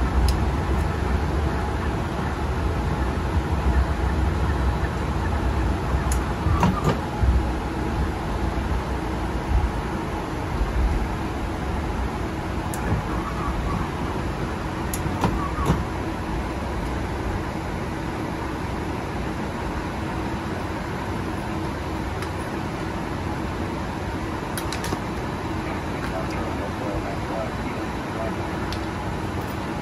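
Airliner flight-deck noise while taxiing: a steady hum of engines and air systems, with an uneven low rumble from rolling over the taxiway that eases after about ten seconds. A few sharp clicks come through, about six, fifteen and twenty-five seconds in.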